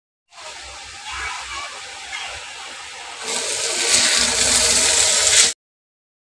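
Potato sticks frying in hot oil in a metal pan, a steady hissing sizzle that grows louder a little past halfway and cuts off suddenly near the end.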